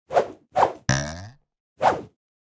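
Edited sound effects: a series of short whooshes, with a stronger falling swoop about a second in, as in an animated logo sting.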